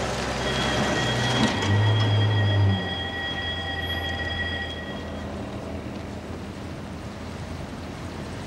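A car driving away, its engine rumble loudest about two seconds in and fading after five. A steady high-pitched squeal runs over the first five seconds.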